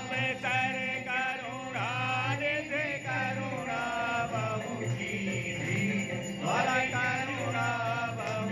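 Devotional music: a sung chant with held, gliding vocal notes over a steady instrumental backing.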